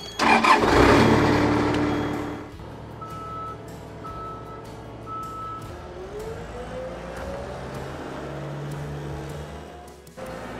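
CAT skid-steer loader's diesel engine starting with a loud burst that settles within about two seconds into a steady run. Three short beeps about a second apart follow, and the engine note rises about six seconds in.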